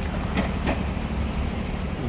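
Steady low rumble of city traffic, with faint distant voices about half a second in.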